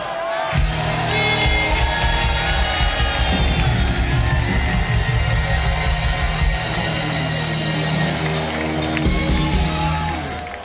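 Rock music from a full band, heavy on bass and drums, filling out about half a second in.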